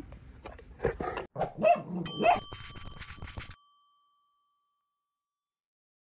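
A dog vocalising in a few short loud bursts over the first two and a half seconds. A single bell-like ding comes about two seconds in and rings on, fading over a second or two.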